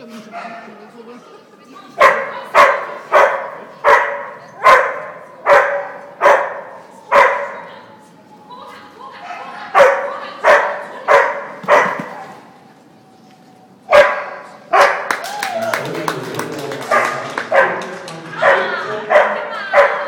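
A dog barking loudly in a steady series, about one and a half barks a second, pausing twice, then barking again more densely near the end with a person's voice mixed in.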